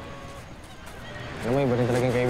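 A person's voice making a drawn-out, wavering wordless sound, like a hesitant 'uhh', starting about one and a half seconds in.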